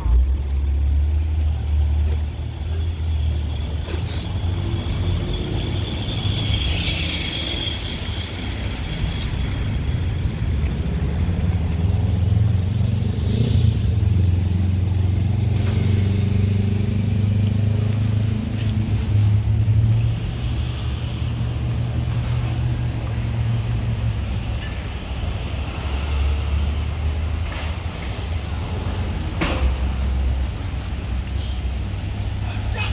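Street traffic: a steady low rumble of vehicle engines running on the road, strongest through the middle.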